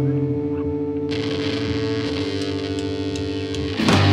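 Distorted electric guitars through effects holding a steady droning chord, with a wash of high noise joining about a second in. The full rock band crashes in with drums just before the end.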